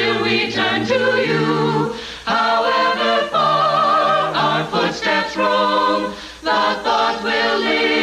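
Mixed choir of men's and women's voices singing together in harmony, in held phrases with short breaks between them.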